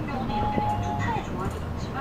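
Inside a moving city bus: radio talk plays under the steady low hum of the bus engine and road noise.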